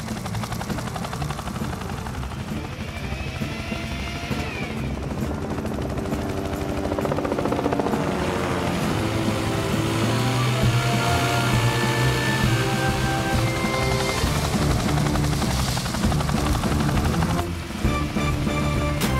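Cartoon helicopter rotor chopping steadily, with background music coming in about halfway and growing louder.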